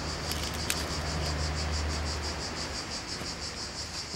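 Insects chirping in a fast, even, steady pulse, like crickets in summer grass, with a low hum underneath. A sharp light click comes just under a second in.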